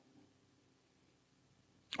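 Near silence: faint room tone in a pause between spoken phrases.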